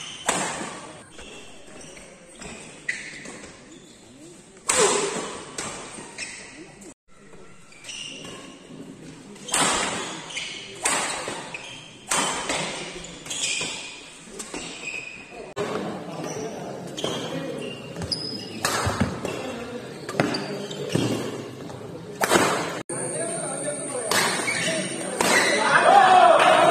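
Badminton rally in a large hall: a series of sharp racket strikes on the shuttlecock, coming in quick exchanges about a second apart and echoing, over the murmur of spectators. Crowd noise swells near the end.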